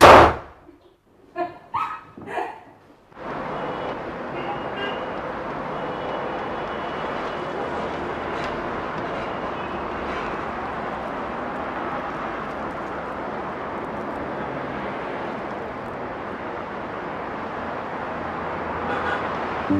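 A loud thump right at the start, then from about three seconds in a steady, even wash of outdoor street and traffic ambience.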